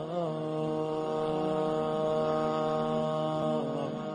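Intro music: a single long held tone, chant-like, on one steady pitch, wavering slightly at first and softening near the end.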